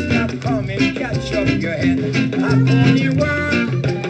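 Vintage Jamaican vinyl single playing on a turntable: an upbeat band song with guitar and bass, between sung lines.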